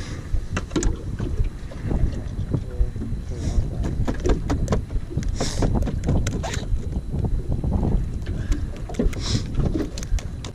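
Wind buffeting the microphone on a small open boat, with a run of knocks and rattles from gear and footing on the deck. There are three short hissing bursts, about three and a half, five and a half, and nine seconds in.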